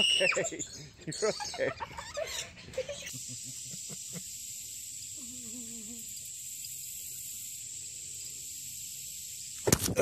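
High-pitched squeals and excited voices. After a cut about three seconds in, a steady high-pitched drone with hiss carries on, with a faint low wavering sound a couple of seconds later. Loud laughter bursts in near the end.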